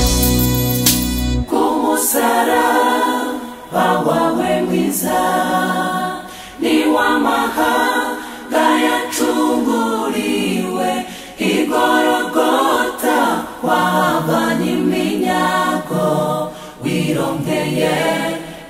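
Gospel choir singing a hymn unaccompanied, in phrases of a second or two with short breaks between them. It comes in about a second and a half in, where a sustained chord from the band with heavy bass stops.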